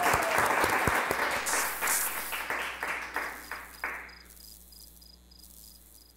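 Applause that fades away about four seconds in.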